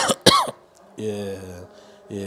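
A man coughs twice, sharply and loudly, into a handheld microphone. About a second later comes a brief held voice sound.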